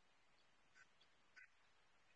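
Near silence: a pause in an online call, with no sound above the faint background.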